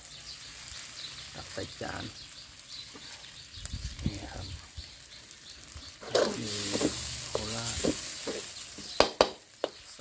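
Freshly stir-fried rice noodles (mee Korat) sizzling in the hot pan while a spatula scrapes and stirs them out onto a plate, with a few sharp utensil clicks near the end.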